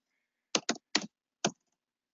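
Computer keyboard keystrokes: four sharp key presses, irregularly spaced over about a second.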